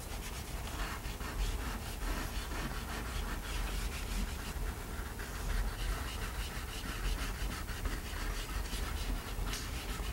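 Chalk pastels scratching and rubbing on drawing paper in a run of short, irregular strokes, over a low steady hum.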